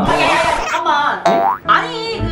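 Cartoon 'boing' sound effect, a quick glide rising in pitch about a second and a half in, over background music and a shouted exclamation.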